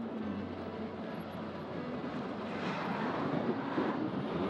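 City street traffic noise, a steady hum of passing vehicles that swells louder over the last couple of seconds.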